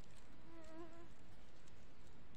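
A flying insect buzzing briefly, a short wavering buzz about half a second in, over steady background hiss. Faint clicks of plastic beads being handled.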